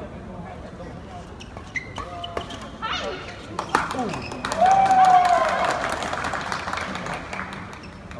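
Badminton rally: rackets striking a shuttlecock, a series of sharp clicks spaced under a second apart. About halfway through comes the loudest part, a short voiced cry with a louder spell of general noise, as the rally ends.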